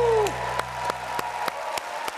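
The band's last chord dies away in the first half second along with a falling voice, and a studio audience applauds, clapping in rhythm about three times a second.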